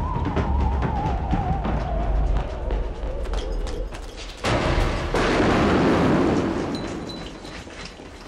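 Electronic psytrance music: a wavering synth tone slides slowly down in pitch over a bass line. About four and a half seconds in, a sudden burst of noise swells and then slowly fades.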